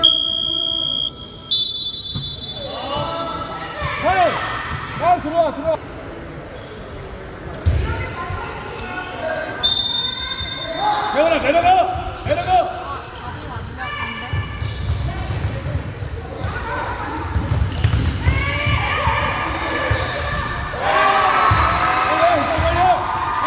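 Basketball game sounds on a hardwood court: a short whistle blast right at the start with shorter ones after it, sneakers squeaking as players run and cut, the ball bouncing, and players and spectators calling out.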